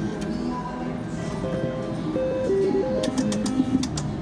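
Music and electronic slot-machine tones over casino din, with a quick run of sharp clicks about three seconds in as the slot machine's reels stop.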